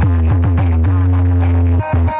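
Loud electronic DJ music with a heavy, sustained bass line, played through an SP Sound DJ speaker stack of bass cabinets and horn speakers. The bass cuts out briefly near the end.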